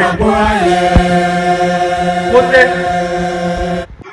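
A loud voice holding one long chanted note, sliding up at the start and then held steady, cut off abruptly just before the end; a single click about a second in.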